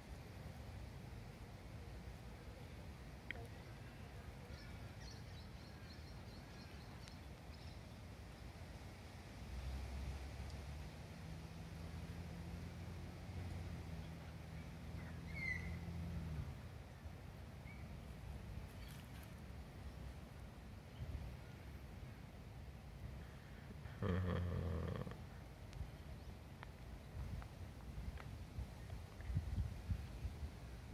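Faint outdoor ambience: a low steady hum in the middle stretch, a few thin high chirps, and a short louder burst of noise about 24 seconds in.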